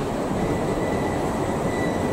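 Steady low rumbling background noise of the street, with a faint thin steady whine above it.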